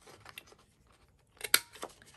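A handheld corner rounder punch snapping once about one and a half seconds in as it cuts a rounded corner off a patterned paper card, with a few lighter clicks around it and faint paper handling before.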